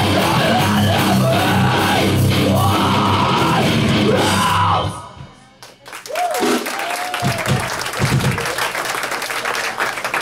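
Live hardcore punk band playing loud distorted guitar, bass and drums, which stop abruptly about halfway through as the song ends. Voices and shouts from the room follow.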